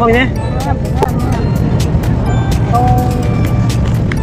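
Steady low rumble of a moving river cruise boat, with music over it.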